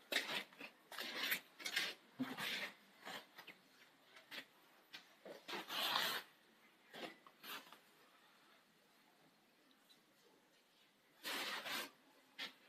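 Faint, irregular scuffs and rubbing from someone moving about with a handheld phone camera: a string of short scrapes, a quiet stretch, then a longer rustle near the end.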